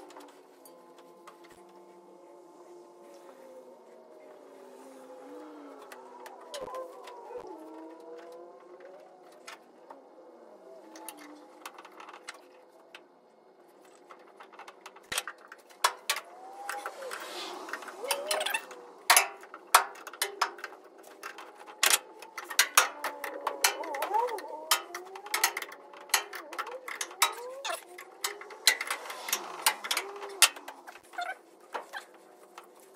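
Sharp metallic clicks and clinks of brass air-line fittings and a wrench being worked on an air-suspension valve block. They are sparse at first and come thick and loud in the second half, over faint wavering tones.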